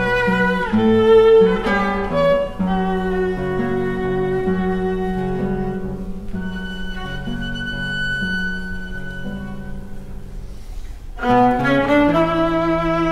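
Viola and classical guitar playing a slow duet: the viola bows a melody that settles into long held notes, including a high sustained note in the middle, over plucked guitar notes. A louder rising phrase begins near the end.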